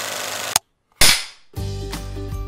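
Sound effects for an animated title: a steady hiss that cuts off with a click about half a second in, a short dead silence, then one sharp crack that dies away over about half a second. Music with steady tones comes in near the end.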